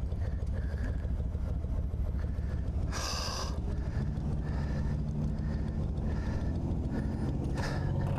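Cruiser motorcycle engine idling with a steady low rumble, joined about halfway through by a second steady engine note from another vehicle. A short hissing rush comes about three seconds in.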